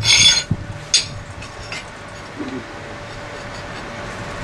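Steel motor-mount bracket parts clinking against each other as they are handled and fitted together, with two ringing metal clinks in the first second, then light scraping and handling.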